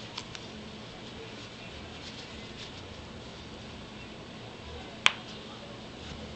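Hands handling a small fabric doll bag: soft handling noise with two small clicks just after the start and one sharp click about five seconds in.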